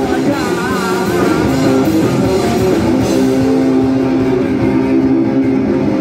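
Live rock band playing loud, with electric guitars, bass and a drum kit. A wavering high line runs through the first two seconds, then the band settles into held low chords from about three seconds in.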